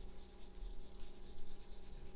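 Colored pencil shading on paper: quick, soft back-and-forth scratching strokes of the lead across the sheet.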